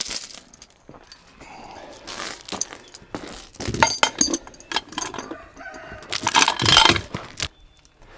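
Heavy steel chain clinking and rattling as it is wrapped around a tire and steel split rim, in several bursts with the longest near the end.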